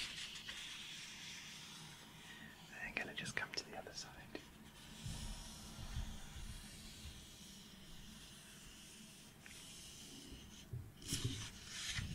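Pages of a paperback book turned and riffled close to the microphones: clusters of crisp paper flicks and rustles about three seconds in and again near the end, with a soft papery hiss between.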